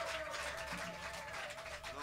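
Room noise from a small club audience: a murmur with light scattered clapping and a faint held tone under it.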